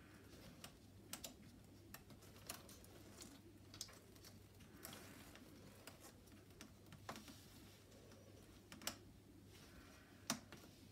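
Near silence broken by faint, irregular clicks and small knocks as hands work the plastic adapter fitting of a ride-on board on a stroller frame, about a dozen over the span.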